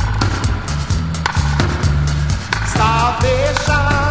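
Roots reggae rhythm track: a deep bass line and drums in a steady groove, with a wavering melody line coming in about three seconds in.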